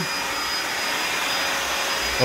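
Backpack vacuum cleaner running steadily on a hardwood floor: an even rushing of air with a thin high whine from the motor.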